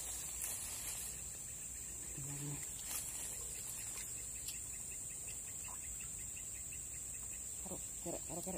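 Insects keeping up a steady, high-pitched chorus.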